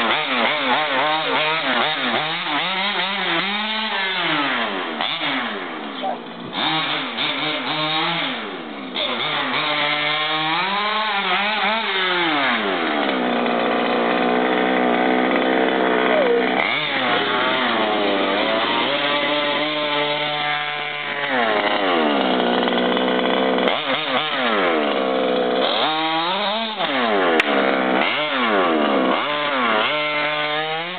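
HPI Baja 5B SS 1/5-scale RC buggy's 30.5cc two-stroke stroker engine revving up and down as the car is driven on pavement, its pitch rising and falling again and again, with a longer held high-rev run in the middle.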